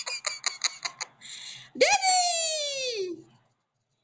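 A person laughing in quick pulses, then a long vocal cry that falls steadily in pitch. The sound drops out completely near the end.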